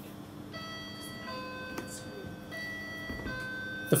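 A two-note electronic tone alternating between a higher and a lower pitch, each note held for about a second, starting about half a second in and repeating twice.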